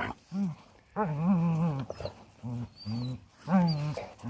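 Dogs in rough play, one giving a string of short pitched growl-whines: about five calls of under a second each, with brief gaps between them.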